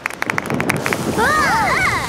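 Cartoon rain sound effect: a quick run of high plinks of the first raindrops, then the hiss of rain setting in. Children's voices call out in rising and falling tones in the second half.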